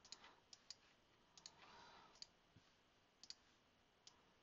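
Faint, scattered clicks of a computer mouse over near-silent room tone, about eight in all, some coming in quick pairs.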